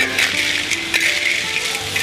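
Snails and perilla leaves sizzling in a hot pan as they stir-fry, a steady hiss with a couple of sharp clicks, over background music.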